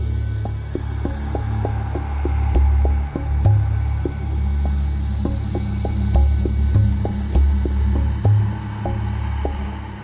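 Wind buffeting the camera microphone: a loud low rumble that swells and drops in gusts, with light scattered ticks.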